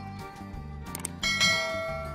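A bright bell chime, the notification-bell sound effect of a subscribe-button animation, rings out about a second in, just after a short click, and fades slowly. It plays over background country-style guitar music.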